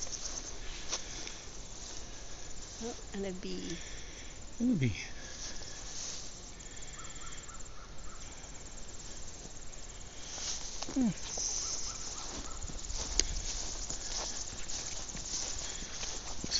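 Outdoor ambience of steady insect chirping with short high chirps scattered through it, and a couple of brief murmured voice sounds, around four and eleven seconds in.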